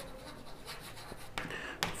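Chalk strokes on a chalkboard as a word is written, faint, with a few light taps near the end.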